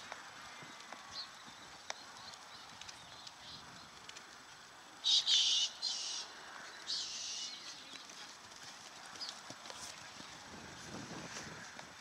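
Faint hoofbeats of a horse cantering on a sand arena. They are heard as scattered soft thuds. Three short, loud, high-pitched bursts of uncertain source come about five to seven seconds in.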